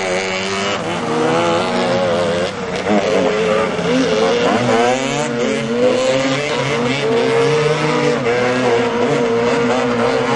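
Engines of modified Piaggio Ape three-wheelers revving up and down in repeated quick rises and falls as they are driven hard.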